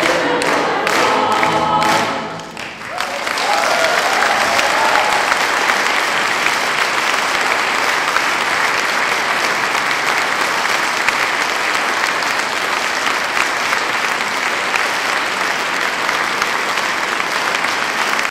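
A mixed choir singing the final chord of a song, which ends about two and a half seconds in. Then an audience claps in steady applause for the rest of the time.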